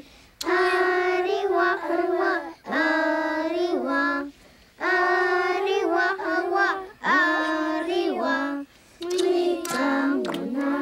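A group of children singing a song together, unaccompanied, in sung phrases of a couple of seconds with held notes and short breaks between them.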